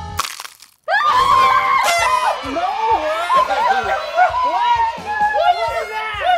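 Drum-backed background music cuts off abruptly with a brief burst of noise, then after a moment of near silence several people break into loud, excited screaming and yelling that runs on to the end.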